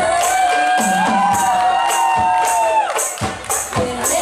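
A rebana ensemble performing a sholawat song: singers hold one long sung note over regular strokes on the rebana frame drums. The note breaks off nearly three seconds in, and the drumming carries on.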